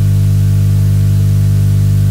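Loud, steady electrical mains hum, strongest at a low buzz near 100 Hz with a ladder of higher overtones, unchanging throughout.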